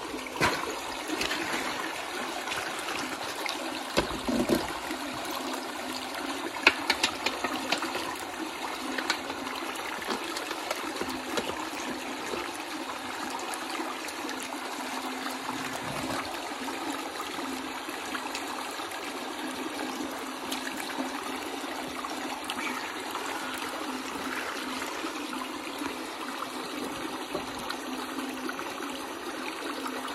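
Water trickling and running steadily, with a few sharp knocks in the first ten seconds as sticks and the trap are handled.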